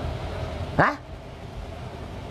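A person's brief rising vocal sound, one short syllable sweeping quickly upward, over a low steady background hum.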